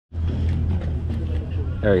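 A steady low rumble of outdoor background noise, with a man's voice saying "there we go" near the end.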